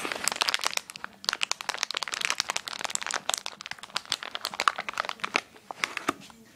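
Crinkly bag of cat treats being handled and rummaged: a dense run of crackling, with a short lull about a second in.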